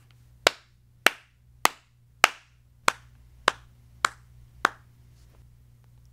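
Eight hand claps at an even beat, a little under two a second, each sharp with a brief ring after it, keeping a steady tempo for others to copy.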